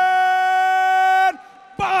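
A ring announcer's voice over the arena PA, drawing out the fighter's surname "Boxell" in one long call held at a steady high pitch. It cuts off about a second and a half in. A short shout follows near the end.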